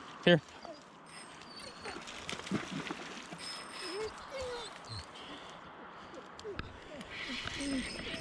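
Steady rush of river water with a few short dog whines scattered through it.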